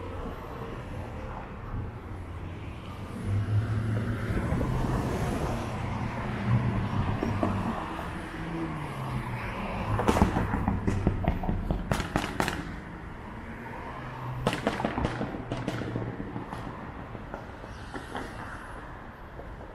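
City street traffic: vehicle engines hum as cars pass and pull away, their pitch rising and falling. Over the second half come several clusters of sharp clacks or knocks.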